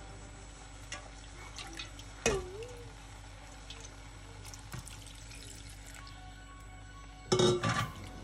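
Water poured from a metal bowl into a clay curry pot, with a few sharp knocks of the bowl or spoon against the pot: one about two seconds in and a louder cluster near the end.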